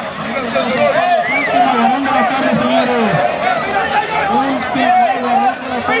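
Men talking, several voices overlapping, over the general chatter of an outdoor crowd.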